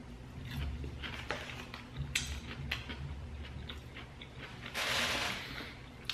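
A person chewing a fried chicken bite dipped in mayo, with scattered soft crunches and mouth clicks; near the end, a short breathy hiss.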